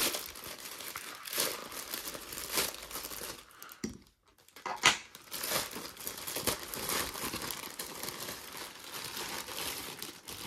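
Plastic poly mailer bag being ripped open and crinkled by hand, a steady rustling crackle. It pauses briefly about four seconds in, then resumes with one loud sharp tear.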